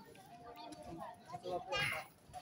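Faint background voices, people talking at a distance, with one voice louder for a moment near the end.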